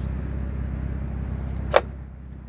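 One sharp click about three-quarters of the way through as a hand reaches behind the rear seat to grab the stowed wind deflector, over a steady low rumble.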